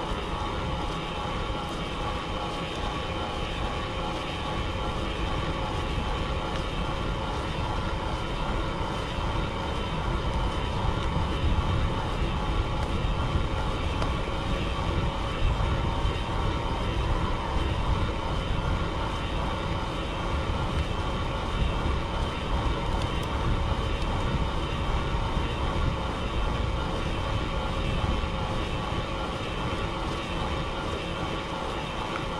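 Mountain bike rolling fast down a paved lane: wind rushing over the helmet-mounted camera's microphone, with the steady hum of tyres on asphalt. It grows a little louder in the middle.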